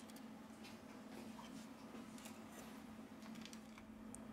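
Near silence: a few faint, light clicks and ticks from a small metal tool prying a camera flex connector off a phone's motherboard, over a faint steady low hum.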